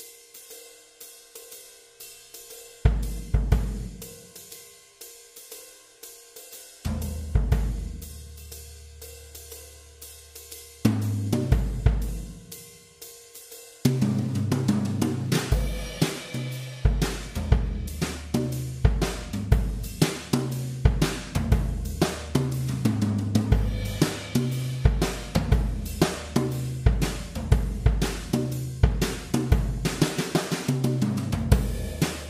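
Background music, a drum-led track: a steady hi-hat pulse with a heavy bass note about every four seconds, building into a full drum-kit beat with a bass line about halfway through.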